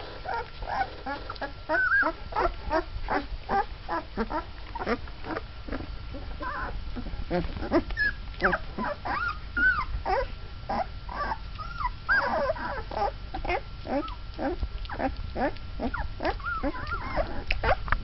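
Young Mastiff puppies, about twelve days old, squeaking and whimpering almost without pause. There are several short, high calls a second, many sliding up or down in pitch.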